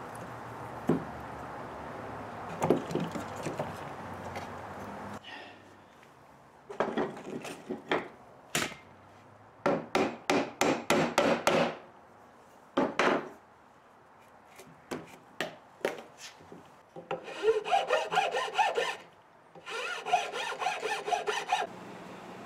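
Hand tool working wood in bursts of quick back-and-forth strokes, about five a second, with short pauses between bursts. The first few seconds hold only a steady hiss with a few light taps.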